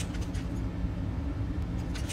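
A steady low rumble with scattered faint clicks and crackles.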